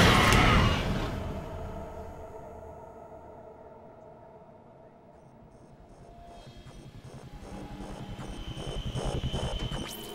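Tense horror film score: sustained tones fade to a low point midway, then swell again with a rhythmic pulse of about three beats a second, building up toward the end.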